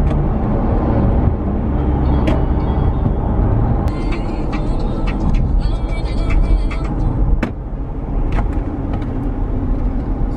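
Road noise inside a moving car: a steady low rumble of engine and tyres on tarmac, with a run of brief high clicks and ticks about four to seven seconds in.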